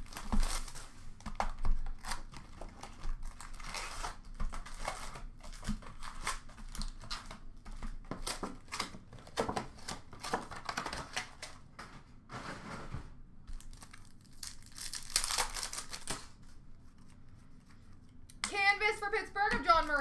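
Hockey card packs and their box packaging being torn open by hand: irregular crinkling and tearing of wrappers, with cards and cardboard rustling as they are handled. A voice starts speaking near the end.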